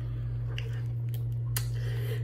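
A few light clicks from a plastic soda bottle being handled, over a steady low hum.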